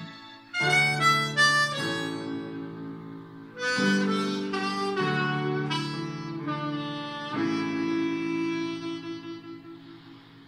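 Diatonic harmonica in A playing a melody over a backing track of sustained chords. A run of short notes gives way to a long held note that fades out near the end.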